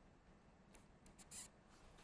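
Near silence over a low steady hum, broken by a few faint short clicks and a brief scratchy sound about one and a half seconds in.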